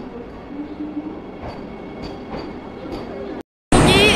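Vande Bharat Express electric multiple-unit train at a station platform: a steady low rumble with a few faint clicks. It breaks off shortly before the end.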